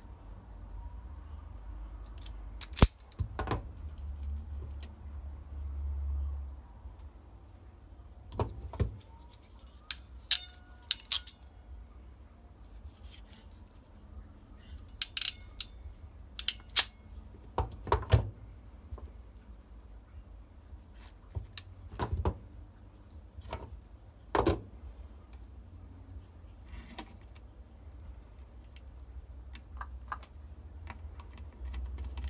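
Scattered sharp clicks and snaps of hand tools and wire being handled on a wooden bench, including a crimping tool pressing a ferrule onto a wire. A brief low rumble comes about four to six seconds in.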